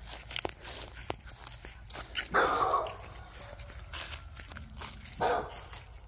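A dog barking on guard, two barks: a longer one about two seconds in and a shorter one near the end. Soft footsteps through dry leaves and grass sound between them.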